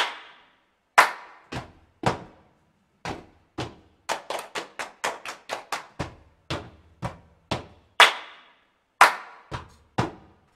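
Rhythmic hand clapping in an a cappella choir piece: a strong clap about once a second, with a quicker run of lighter claps in the middle, each ringing briefly after it.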